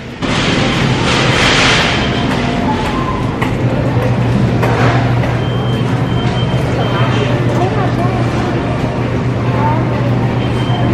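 Supermarket ambience: a shopping cart rolling along with faint background voices, and a steady low hum, typical of the refrigerated cases, that sets in about three and a half seconds in.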